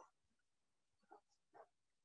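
Near silence, broken by two faint short cries from an animal, about a second and a second and a half in.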